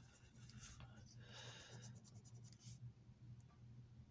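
Faint scraping of a coin on a scratch-off lottery ticket, in a few short strokes over the first three seconds, over a low steady hum.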